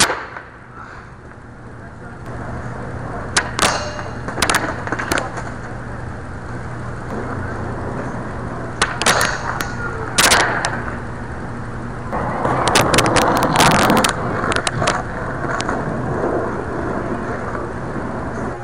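Skateboard wheels rolling on concrete, broken by sharp clacks as the board is popped and lands on the metal flat bar and the ground. Near two-thirds of the way through comes a louder, longer stretch of scraping and rapid clatter, the board grinding along the bar.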